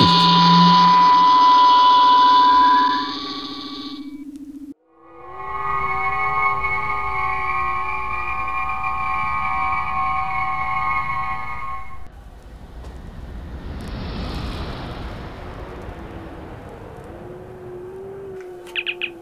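Star Trek transporter beam sound effect: a shimmering chord of steady high tones that fades out about four seconds in. After a moment of silence it swells back for the materialization and cuts off at about twelve seconds. A softer, even hiss follows.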